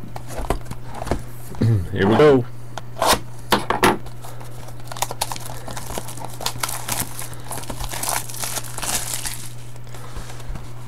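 A few sharp knocks of cardboard boxes being handled, then plastic wrapping crinkling and tearing as a sealed trading-card box is opened by hand, from about five seconds in until just before the end.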